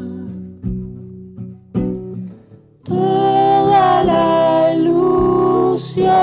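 Acoustic guitar picking a few separate notes, then about three seconds in a woman's voice comes in singing a held phrase over the guitar.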